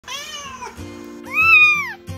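A domestic cat meowing twice: a short, slightly falling meow, then a louder, longer meow that rises and falls. Background music plays underneath.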